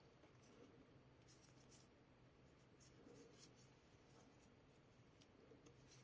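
Near silence, with a few faint, scattered soft ticks and rustles of a metal crochet hook working thick tape yarn.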